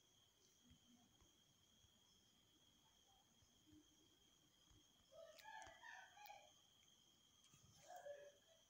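Near silence, with a faint rooster crowing about five seconds in, in a call of several short parts lasting just over a second, and a briefer call near the end.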